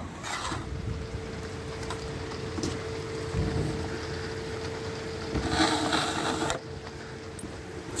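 Motorhome habitation door's push-button handle clicking as the door is released, followed by scattered handling noises, a low thump and a rustle about five and a half seconds in as the door is opened and someone steps in. A faint steady hum runs underneath.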